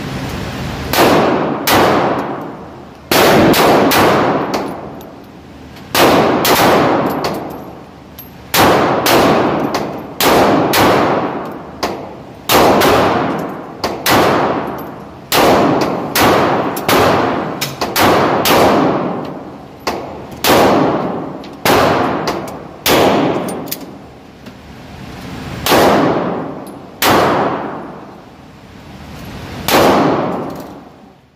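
Pistol fired shot after shot, each a sharp report followed by a long echo off the walls of an indoor shooting range. There are about two dozen shots, spaced unevenly from half a second to a couple of seconds apart.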